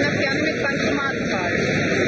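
Background noise of a large airport terminal hall: a steady wash of noise with indistinct voices in it.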